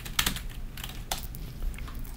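Computer keyboard keys being typed: a quick run of sharp, irregular keystroke clicks in the first half-second, then a few scattered ones.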